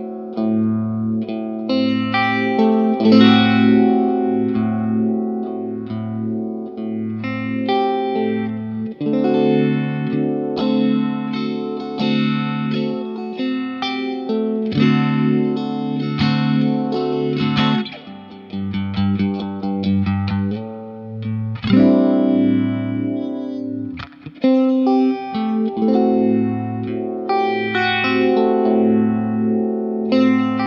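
Electric guitar riff played through a Black Cat Vibe pedal, a Univibe-style chorus/vibrato effect. A low note repeats about once a second under chords, with a couple of short breaks in the playing near the middle.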